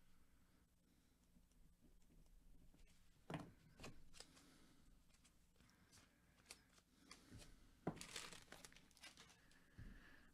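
Near silence broken by a few faint crinkles of foil trading-card pack wrappers being handled, about three seconds in and again around eight seconds.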